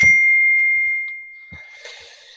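A single ding: one clear high tone that starts sharply and fades away over about a second and a half.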